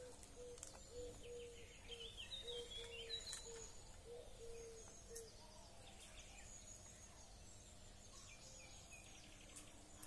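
Faint outdoor ambience with birds calling: a short low note repeated over and over for about the first five seconds, with scattered higher chirps.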